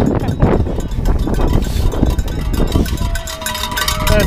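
Crowd of marathon runners heard from a camera carried by a running runner: footfalls and wind rumbling on the microphone, with rapid jingling. About three seconds in a single steady pitched tone starts and holds.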